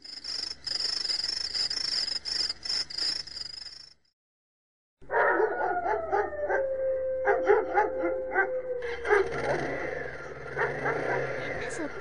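A high, steady shrill tone for about four seconds, then a sudden second of silence. After that come dogs howling and yelping in the night, with one long howl that slides slowly down in pitch and is held, and short yips around it.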